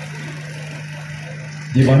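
A steady low hum fills a short pause in a man's speech over a microphone; his amplified voice comes back in near the end.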